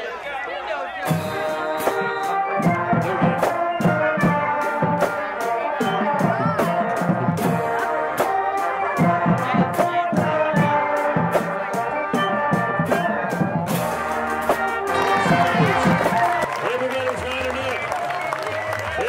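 Brass band with drums playing a lively tune, horns over a steady drum beat of about two to three strikes a second; the drum strikes stop about fourteen seconds in while the horns play on.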